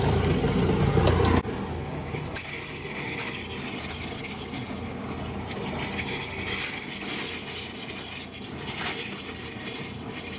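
A 14-cup food processor running, its motor blending frozen banana and blueberries. The loud, low hum drops suddenly about a second and a half in, and the machine then runs on steadily at a lower level.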